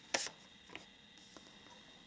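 A tarot card being drawn and laid down on a table: one sharp snap of the card just after the start, then two faint light ticks.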